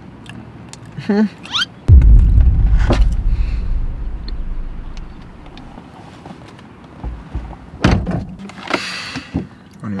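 A car's power window being lowered: a sudden loud low rumble about two seconds in that fades away over the next few seconds, then a single knock near the end.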